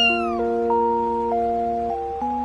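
A cat's single meow, rising then falling in pitch, over background music of held, stepping notes.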